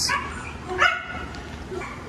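Scottish Terrier giving one short bark about a second in.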